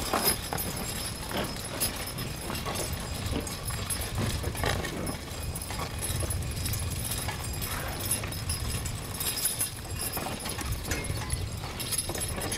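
Hoofbeats of a three-horse Percheron draft team walking steadily as it pulls a horse-drawn riding plow through sod, with irregular knocks and rattles from the harness and plow.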